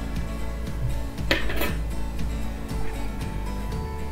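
Background music, with a couple of metal clinks about a second and a half in as a wire pressure-cooker trivet is set down on a countertop.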